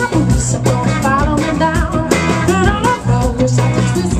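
Live soul-rock band playing: a woman's lead vocal over electric guitars and a drum kit, with a steady beat.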